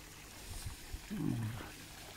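A man's brief, low, falling murmur about a second in, over a faint steady hiss.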